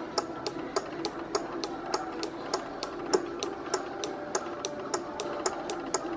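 A 12 V DC relay driven by a square-wave oscillator clicking on and off in a steady rhythm, about three sharp clicks a second, over a faint steady hum.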